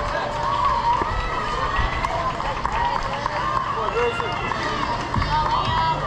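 Indistinct shouting and calling from spectators and players during a play at a youth baseball field, voices overlapping and drawn out, with steady outdoor field noise underneath.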